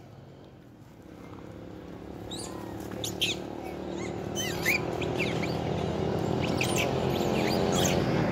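Macaque monkeys giving short, high-pitched squeaks, several in quick succession from about two seconds in. Under them a motorcycle engine approaches, growing steadily louder.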